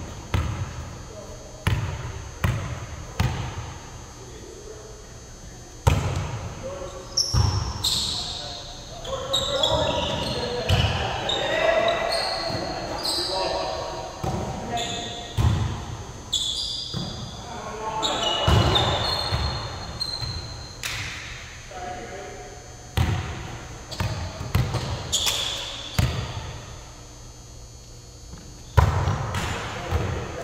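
Volleyball being struck by players' hands and forearms: a string of sharp slaps, echoing in a large gymnasium. Players' voices call out between the hits, and short high squeaks, typical of sneakers on the hardwood court, come in the middle of the rallies.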